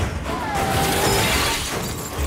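Action-film chase sound mix: crashing and shattering debris over a music score.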